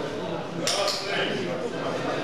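Indistinct voices talking in the hall, with two quick clinks close together less than a second in.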